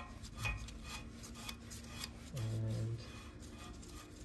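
Steam radiator's union nut being hand-threaded onto its doped threads: light scraping and small metallic clicks of the threads and gloved fingers. A brief low hum, about half a second long, comes a little past halfway.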